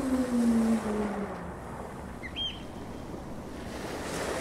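A woman's long voiced exhale on an open "ah", sliding slowly down in pitch as she lets out a deep yoga breath, which fades out about a second and a half in. After it comes an even wash of ocean-surf noise.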